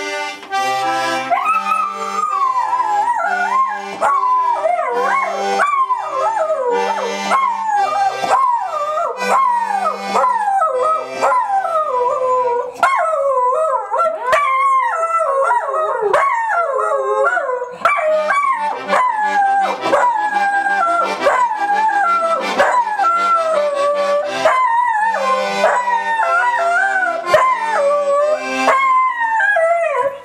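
A dog howling along to a toy accordion. The howl wavers and keeps sliding down in pitch over the accordion's short held chords, which drop out for a few seconds around the middle.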